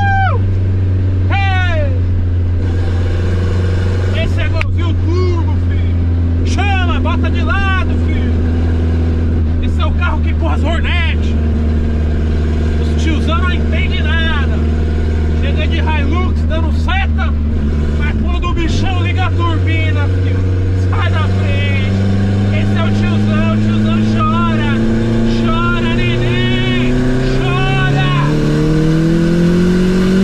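Car engine heard from inside the cabin, running at a steady drone while cruising, with a brief break in the drone about eighteen seconds in. It then rises steadily in pitch through the last ten seconds as the car accelerates.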